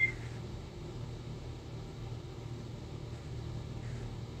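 Steady low hum under a faint hiss, with a brief high blip right at the start.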